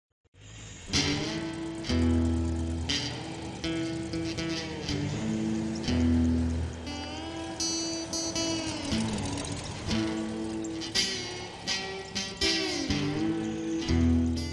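Instrumental intro of a psychobilly song, led by plucked electric guitar with notes that slide down in pitch and loud low notes every few seconds.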